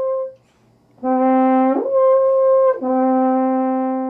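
French horn played through a clear mouthpiece. A held note dies away at the start. A lower note then slurs up about an octave, holds, and slurs back down to the low note, which is held and fades out near the end.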